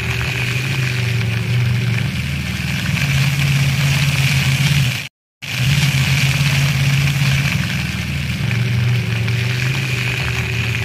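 Street traffic at an intersection: vehicle engines idling and running as a steady low hum, under the hiss of a splash-pad fountain's water jets. The sound cuts out completely for a moment about halfway through.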